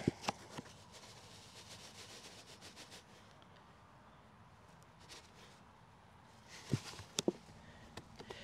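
Quiet hand-work sounds of a cardboard carton of Epsom salt being handled and sprinkled into a planting hole in potting soil: a few light clicks at the start, faint rustling, and a short cluster of knocks near the end.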